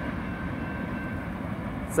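Mixed freight train rolling past, a steady even rolling noise of its cars on the rails.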